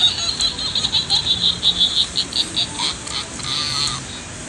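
A Halloween prop's electronic sound effect playing through its small speaker: a high, rapid pulsing of about six pulses a second, ending in a longer burst.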